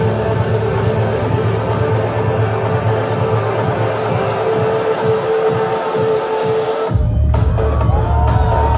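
Loud electronic trance music from a DJ set, with a long held synth note over a steady bass. About seven seconds in, the held note and upper sounds cut away and a heavier bass takes over.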